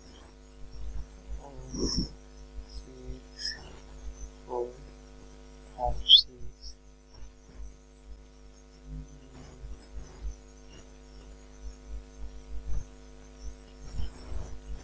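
Steady electrical mains hum on the recording, with a low throbbing underneath and a few faint brief noises, the sharpest about six seconds in.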